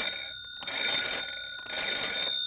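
An old-style telephone bell ringing in three short bursts about a second apart, its metallic ringing tones hanging on between the bursts.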